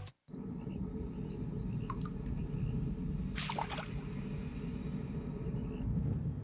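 A brief dropout at a cut, then a TV promo's low, steady rumbling drone, with a couple of short sound effects about two and three and a half seconds in.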